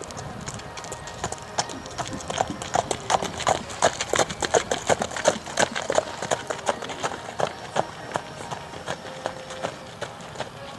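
Shod horse's hooves clip-clopping on pavement as it trots in hand, at about three to four strikes a second. The strikes grow louder toward the middle, then go on more softly as the horse moves away.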